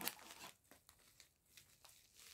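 Faint crinkling of parcel packaging being handled and cut open, dying away within about half a second into near silence.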